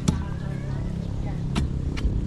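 Two sharp knocks about a second and a half apart as a steel digging bar is jabbed into the soil and roots around a tree stump, over a low steady hum.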